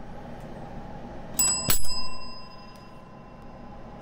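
A small metal bell struck twice in quick succession about a second and a half in, then ringing out with a clear high tone that fades over a couple of seconds.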